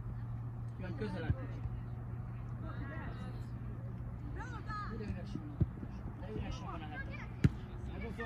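Outdoor youth football play: players and spectators shouting at a distance, with sharp thuds of the ball being kicked about a second in, midway, and near the end, over a steady low hum.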